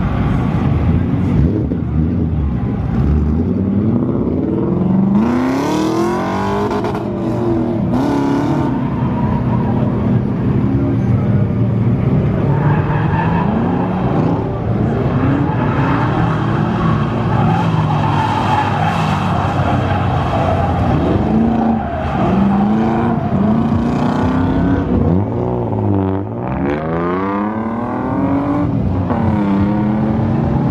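Drift car engine, a first-generation Mazda Miata's, revving up and down over and over, its pitch rising and falling every two to three seconds. Tyres skid as the car slides sideways.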